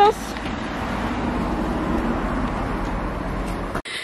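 Road traffic on the street alongside: a steady rush of car tyres and engine passing, a little louder midway, cut off suddenly near the end.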